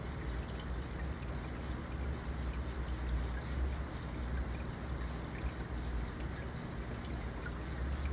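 Aquarium filter water trickling and bubbling steadily, with a low hum underneath.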